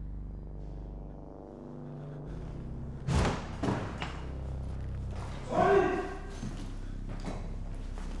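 A low, steady drone with two heavy thuds a little over three seconds in, about half a second apart, then a short vocal cry or groan near the six-second mark.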